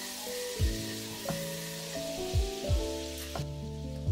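Raspberries and their juice bubbling and sizzling in a small frying pan as they cook down into a jam, over background music with a thudding beat. The sizzling cuts off suddenly about three and a half seconds in, leaving the music.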